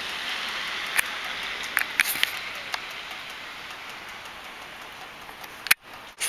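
Steady outdoor hiss with a few scattered light ticks and patters, fading slightly and cutting off abruptly near the end.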